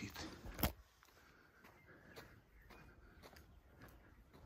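A sharp knock of a hand-held phone being moved, just under a second in, then faint footsteps on an asphalt path, about two steps a second.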